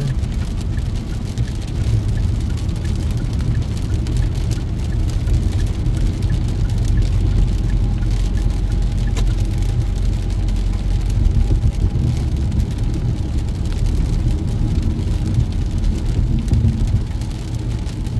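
Steady road and tyre noise of a car driving on a wet highway, heard from inside the cabin, with rain hitting the windshield.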